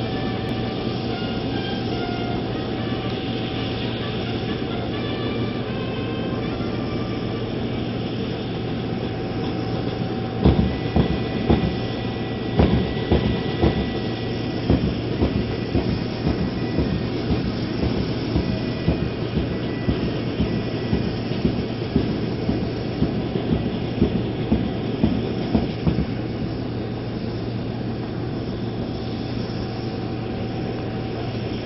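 Steady hum and whine of a parked aircraft's engines running on the apron. From about ten seconds in until a few seconds before the end, a regular series of loud thumps, about two a second, rises over it.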